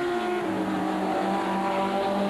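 Group 1 Ford Capri saloon race cars running hard at speed. The engine note drops in pitch within the first half second, then holds steady.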